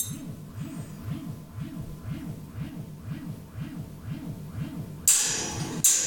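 Looped electronic feedback noise from a chain of delay and effects pedals: a low, warbling pitch sweeping up and down about twice a second in a steady repeating cycle. About five seconds in, a loud metallic crash cuts in over it.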